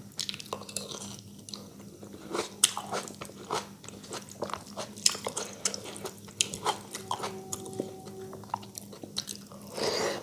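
Close-miked chewing and mouth sounds of someone eating rice and curry by hand: wet clicks and smacks coming irregularly, several a second. A faint steady hum runs underneath.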